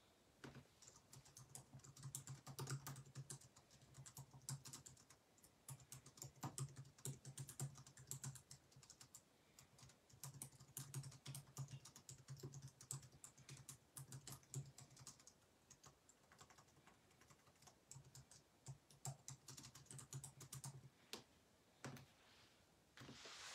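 Faint typing on a computer keyboard: runs of quick keystrokes broken by short pauses.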